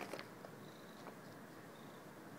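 A domestic cat purring faintly, its face right against the microphone.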